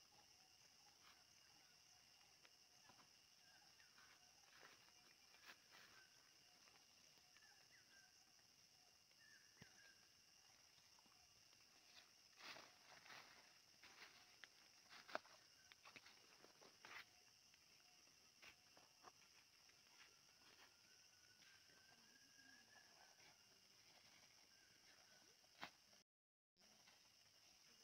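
Near silence: a faint steady high hiss with scattered faint crackles and rustles of footsteps in forest undergrowth. The crackles are thickest in the middle, with one sharper snap about fifteen seconds in.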